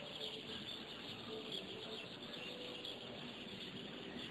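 Insect chorus chirring steadily and high-pitched, with no pauses.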